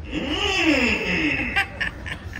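A man's long, drawn-out 'mmm', rising and then falling in pitch, with audience laughter, and a few short bursts of laughter near the end.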